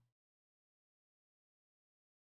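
Silence: the sound track is empty, with no room tone.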